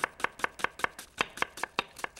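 Knife chopping an onion on a wooden cutting board, in quick, even strokes of about five or six a second.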